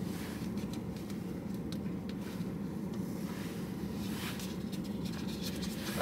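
Faint light scratching and small ticks of fingers picking tangerine pieces out of a paper fruit cup, over a steady low hum inside a car.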